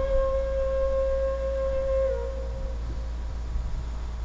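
A single held tone with a faint overtone above it. It dips slightly in pitch and fades out about two and a half seconds in. A steady low hum runs under it.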